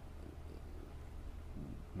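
A steady low hum, with a brief faint vocal sound about one and a half seconds in.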